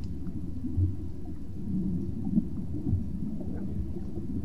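Underwater ambience track: a steady low rumble with faint warbling tones running through it.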